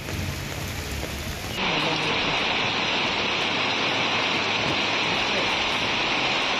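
Heavy rain pouring down in a steady hiss. About a second and a half in it switches abruptly to a louder, harsher downpour.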